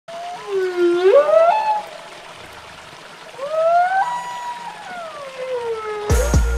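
Humpback whale song: two long pitched calls with overtones. The first rises in pitch about a second in. The second rises, then slides slowly down over about two seconds.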